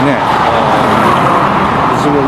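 City street traffic, a car passing close by with a steady rush of engine and tyre noise.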